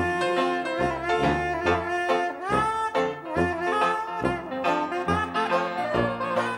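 Traditional jazz band playing an instrumental passage: brass horns carry the melody together over low bass notes on the beat. One horn line slides upward about two and a half seconds in.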